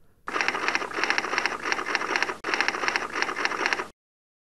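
Rapid mechanical clattering in two runs, the second starting after a brief break about two and a half seconds in. It cuts off suddenly near the end.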